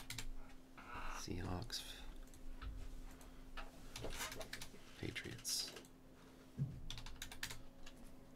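Typing on a computer keyboard: scattered key clicks in short irregular clusters.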